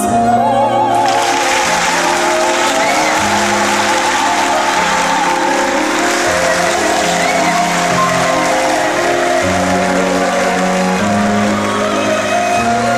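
Operatic soprano singing with a wide vibrato over slow, held low accompaniment notes, with audience applause starting about a second in and continuing under the music.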